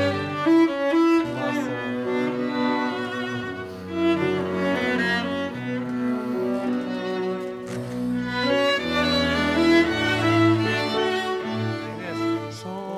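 A string orchestra plays a slow passage of sustained notes, with low cello and double bass lines under violin melody.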